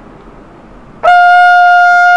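Trumpet: after about a second of low room noise, a loud high note starts cleanly and is held steady.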